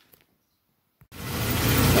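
Near silence, then a click about a second in, after which the 1980 Saab 900 Turbo's turbocharged four-cylinder engine is heard running, steady and loud.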